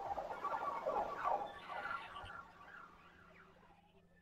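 A flock of birds calling together, a dense jumble of short chirps, loudest over the first two seconds and fading away by about three seconds in.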